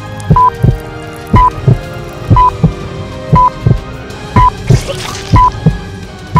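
Heartbeat sound effect: a double thump about once a second, each first beat with a short high beep, over a faint held musical drone. A brief hiss passes about five seconds in.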